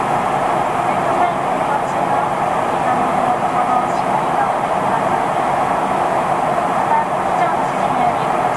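Steady cabin noise inside a Boeing 737 in flight: the even rush of air along the fuselage and the drone of the jet engines, with no change in level.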